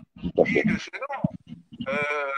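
Speech only: a man says "oui" and goes on talking briefly.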